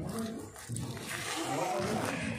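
Raised human voices calling out over a rough background noise.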